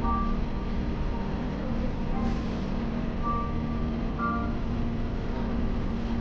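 Steady low room hum and background noise, with a few short, faint high beeping tones.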